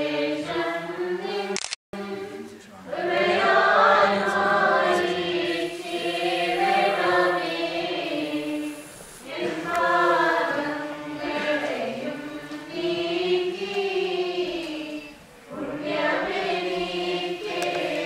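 A choir singing a liturgical hymn of the Holy Qurbono in long phrases with short breaks between them. The sound drops out briefly just under two seconds in.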